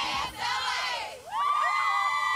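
A squad of high-school cheerleaders shouting a cheer together, many high voices overlapping. After a short break about a second in, they go into one long held shout.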